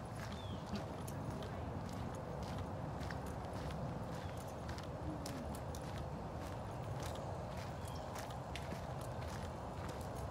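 Footsteps crunching on a dirt and gravel road at a steady walking pace, about two steps a second, over a steady low rumble.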